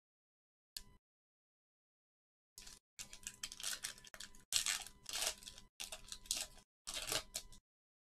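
Foil trading-card pack being torn open and crinkled by hand, in a run of rustling, tearing bursts over about five seconds, after a brief click about a second in.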